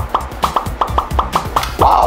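A rapid run of short pop sound effects, about five or six a second, each marking a logo popping onto the screen, over background music with a low beat.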